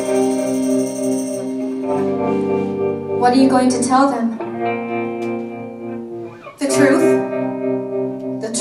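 Live rock band holding sustained chords on electric guitar and keyboard, with a woman's voice coming in over it in short phrases through a microphone.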